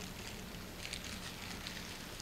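Quiet room tone in a large hall: a faint steady hum and hiss with a few soft rustles.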